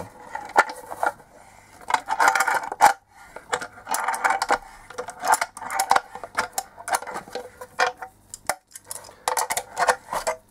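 Screw-type knockout punch being tightened with locking pliers, its cutting edge working through the plastic wall of a junction box: bursts of creaking and scraping with sharp metallic clicks between them, over several strokes of the pliers.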